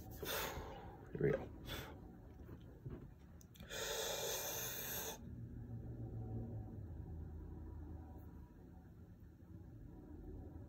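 A man's long, deep breath drawn in for about a second and a half a few seconds in, a big diaphragm breath taken before holding it; after that only faint room tone while the breath is held.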